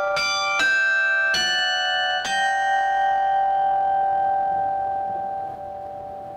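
A closing musical sting of four struck bell-like chime notes in quick succession. The last note rings on and slowly fades away.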